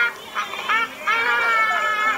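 A young boy wailing in distress, with two short high-pitched cries of 'ah' and then one long drawn-out cry from about a second in, as he complains that standing is too hard for him.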